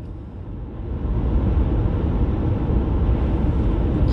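Steady road and engine noise heard inside a moving car's cabin: a low rumble that grows louder about a second in and then holds steady.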